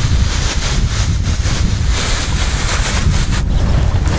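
Wind buffeting the microphone, a loud steady rumble, with the hiss of a garden sprayer wand misting liquid onto a currant bush; the hiss is brighter about halfway through.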